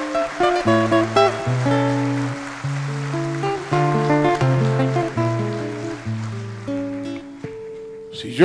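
Acoustic guitar played fingerstyle: plucked melody notes over a bass line, thinning out near the end to a single held note.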